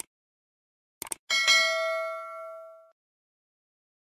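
Subscribe-button sound effect: two quick mouse clicks, then a bright bell ding that rings on and fades out over about a second and a half.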